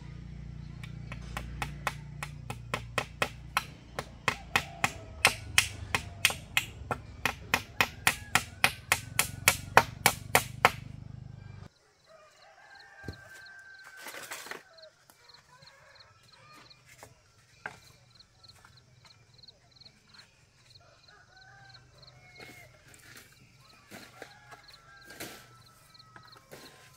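A hammer striking steadily at about three blows a second for roughly the first twelve seconds, the blows growing louder, fastening the bamboo chicken coop frame; it stops abruptly. After that only a few scattered knocks of bamboo being handled are heard.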